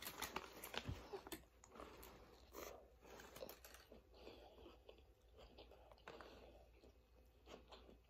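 Faint chewing of a mouthful of beef taco, with a bite at the start followed by soft, wet mouth noises and small irregular clicks.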